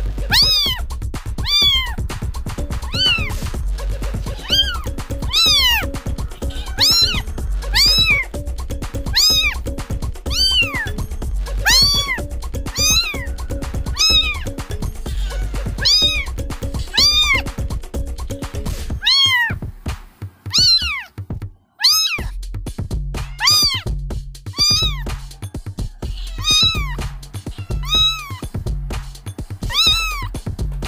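Kitten meowing over and over, about one high-pitched meow a second, each rising then falling in pitch, over background music with a steady low beat. The beat drops out for a moment about two-thirds of the way through while the meows go on.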